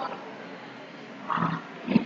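Steady low background hiss from the recording, with a short, faint voice sound, a murmur or breath, about one and a half seconds in.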